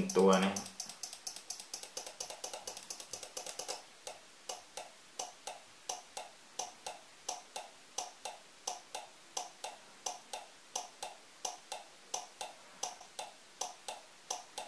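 A 12 V relay wired as a flasher clicking on and off as it switches an LED lamp, each flash a pair of clicks. The clicking is quick for the first few seconds, then slows to about one flash a second once a second 470 µF capacitor is held in parallel: the larger capacitance lengthens the flash timing.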